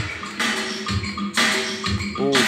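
Anatolian rock song playing from a vinyl record on a turntable, picked up in mono by a phone's microphone: an instrumental passage with a couple of sharp percussion hits.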